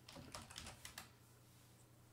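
Faint computer-keyboard keystrokes: a quick run of several taps in the first second as a short word is typed and Return is pressed.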